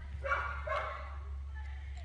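A young Lab mix dog gives one short vocal sound about a quarter second in, lasting under a second, over a steady low hum.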